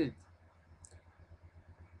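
The end of a spoken word, then a faint single click a little under a second in, over a low steady hum.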